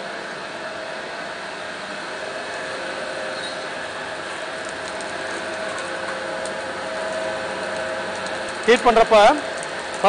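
Steady whir and rushing air of a blacksmith forge's air blower feeding the fire, with a faint steady tone in it.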